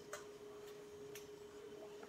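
Faint, short ticks of dry-erase markers writing on a whiteboard, a few separate strokes, over a faint steady hum.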